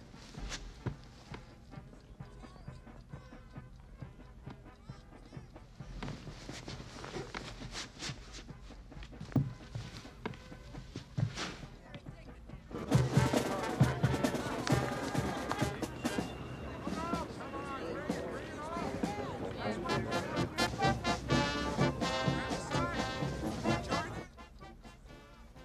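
Quiet indoor sound with a few scattered knocks for the first half, then about halfway through a loud stretch of brass-band music mixed with voices starts up suddenly and carries on: the band and crowd of an outdoor campaign rally.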